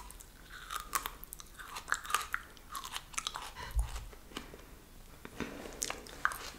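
Biting into and chewing a piece of raw aloe vera leaf: a quick run of crunches and clicks, busiest in the first three seconds, sparser for a moment, then picking up again near the end.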